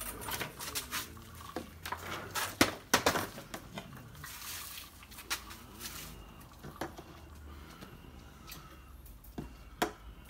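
Clear plastic cups being set down and moved about on a tabletop: scattered light clacks, several close together about three seconds in and a sharper pair near the end, over a low steady hum.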